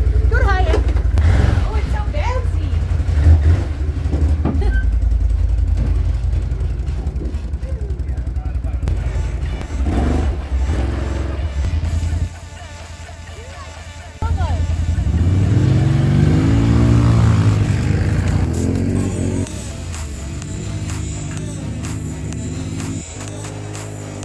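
ATV engines running and revving over several cut-together clips. Near the middle one engine's pitch climbs and falls back as the quad is ridden.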